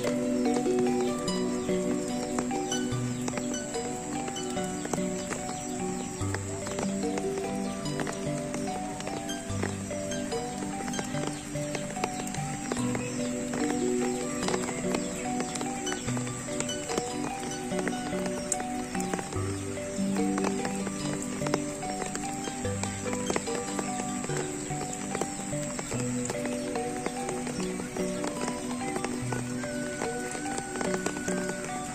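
Sundanese degung gamelan music: a slow melody of pitched metal notes over low beats about every three seconds, with steady rain falling on water and foliage.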